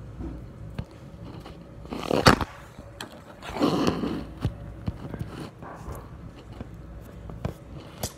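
Close handling noise: scattered light clicks and knocks, a short loud scrape about two seconds in, and a longer brushing rub around four seconds.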